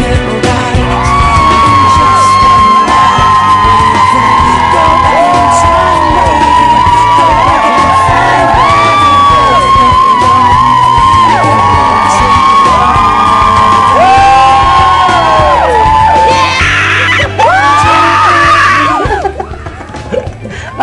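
Pop song with a singer holding long, gliding notes over a full band. Near the end comes a burst of crowd screaming and cheering, then the sound drops off abruptly.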